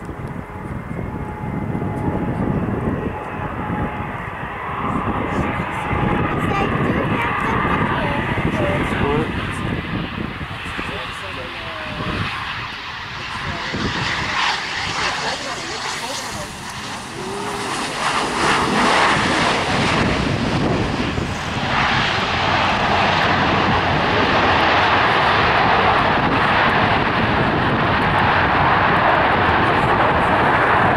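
A twin-engine business jet landing, with wind buffeting the microphone as it comes in on approach with a faint engine whine. After touchdown, about halfway through, the jet engine noise swells and stays loud and steady as the aircraft rolls out down the runway.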